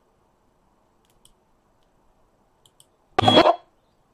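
Desk handling noise: a few faint clicks, then one short, loud noise lasting about half a second, a little after three seconds in.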